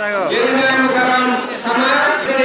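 Voices singing long, steady held notes, with a short break about three-quarters of the way through.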